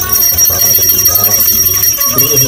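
Devotional puja music with bells ringing, between chanted lines.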